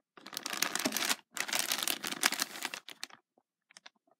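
Thin plastic toy bags crinkling as they are handled, in two spells over the first three seconds, then a few faint ticks.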